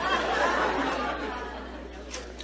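Comedy club audience laughing together, loudest at the start and dying away.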